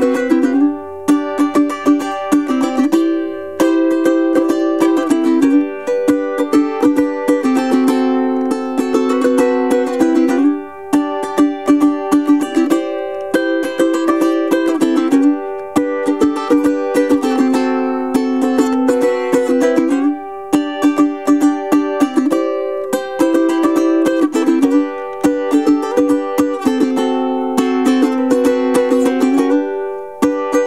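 Anuenue UT200-HB Hummingbird tenor ukulele, with a moon spruce top and rosewood back and sides, strummed in a steady rhythm. The chords change every couple of seconds in a repeating progression.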